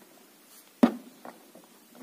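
A single sharp knock of hard plastic toy parts against the table just under a second in, followed by a much fainter tap.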